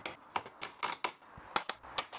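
Wooden planter tray being tapped home into its housings on the battens, with a quick irregular run of sharp wood-on-wood taps and clicks.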